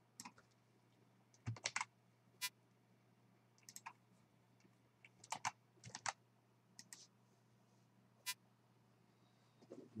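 Computer keyboard keystrokes and clicks, a few at a time with pauses between, as a search word is typed in and run, over a faint steady low hum.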